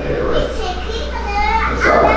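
Children's voices, high-pitched chatter and calls, over a steady low hum.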